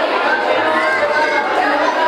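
Many children's voices chattering at once, a steady, continuous babble with no single clear speaker.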